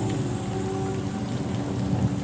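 Steady rain-ambience sound effect under a faint, reverberant held vocal note that lingers from the previous sung line.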